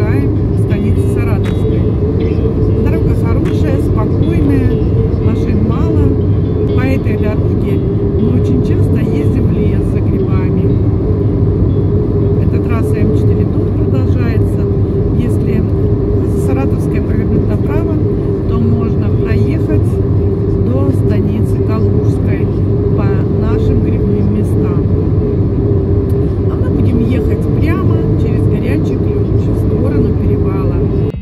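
Steady road and engine noise inside a moving car's cabin: an even rumble with a constant hum that does not change.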